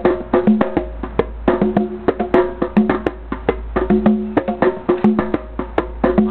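Hand drums, a djembe among them, struck with the hands in a fast, dense rhythm of sharp slaps, with deep bass notes recurring between them.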